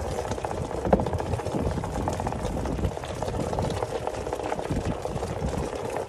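Onewheel Pint's electric hub motor humming steadily as the board rolls over wet ground, with tyre noise and low rumble underneath and a few light clicks.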